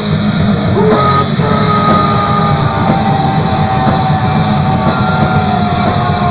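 A live rock band playing electric guitars and drums. Long held lead notes sag downward in pitch near the end.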